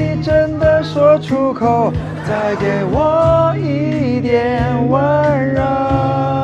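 A song performed live by a singer with instrumental accompaniment, the voice holding long notes over a steady backing.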